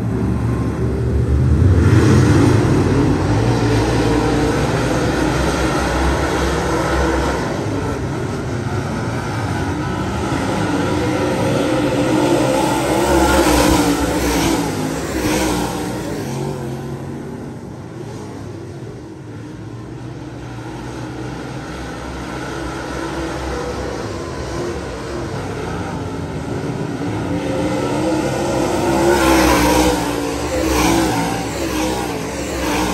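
Dirt Super Late Model race cars running laps on a dirt oval. Their V8 engines rise loudly as the pack passes close, about two seconds in, again a little before halfway and near the end, and fall back between passes.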